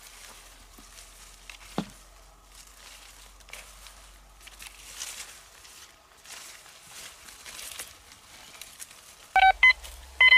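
Metal detector swept through weeds with faint rustling of plants, then near the end it starts beeping loudly in short repeated tones, the signal of a metal target under the coil.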